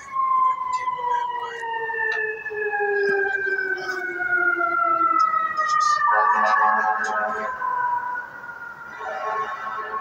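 A siren sounding with several tones at once, each slowly falling in pitch over several seconds. About six seconds in, a louder, denser set of siren tones comes in.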